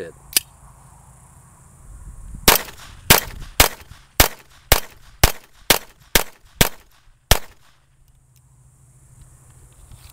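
Puma 1911-style semi-automatic .22 rimfire pistol fired ten times in steady succession, about two shots a second, starting about two and a half seconds in. The last shot comes a little later than the rest.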